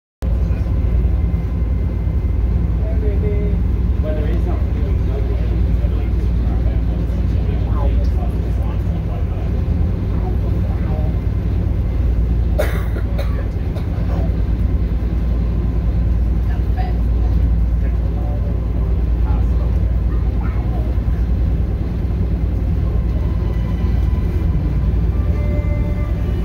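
Cruise boat's engine running steadily underway, a loud low drone, with faint voices of people talking in the background and a single sharp click about halfway through.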